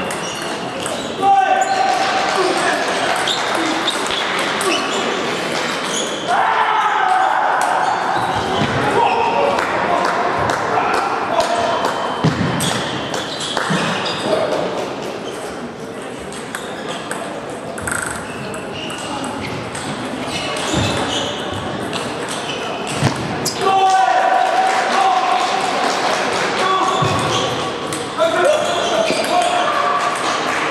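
Table tennis ball clicking off the paddles and bouncing on the table in a large, echoing hall, over a steady run of people's voices, with loud voice bursts about a second in and again later on.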